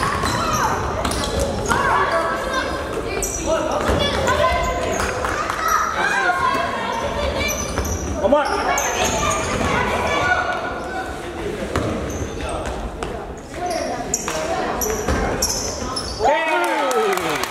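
Sounds of a youth basketball game in a gym: the ball bouncing on the hardwood court amid players running and shouting, with voices from the sidelines, all echoing in the hall.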